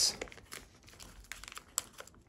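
Plastic packet of model foliage crinkling as it is pulled open and handled by hand: irregular crackles with a couple of sharper snaps in the second half.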